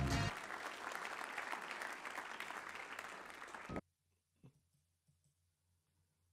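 A short burst of music ends and an audience applauds, the applause slowly fading, then cutting off abruptly about four seconds in, leaving near silence.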